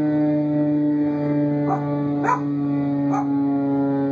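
A siren holding one steady tone, sinking slightly in pitch, while a puppy answers it with three short howling yips, the middle one the loudest.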